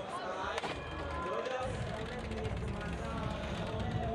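Indistinct voices over background music, with no clear single event.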